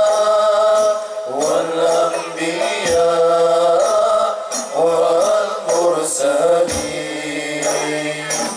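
A male voice singing an Arabic sholawat through a microphone, in long held notes with ornamented turns, over a steady low tone, with a couple of low drum thumps.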